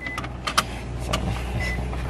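Steady low rumble inside a car cabin, with a few sharp clicks and knocks over it.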